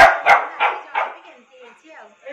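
A dog barking, four quick barks in the first second, the first two loudest and the rest fading.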